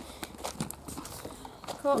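Light, irregular taps and clicks of a handheld camera being handled and carried along at a walk, with a child's voice starting near the end.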